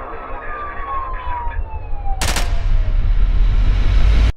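Intro sound design of a pop music video: a slowly falling tone over a deep bass drone, with a sharp noisy burst a little after two seconds in, then the bass swelling louder near the end.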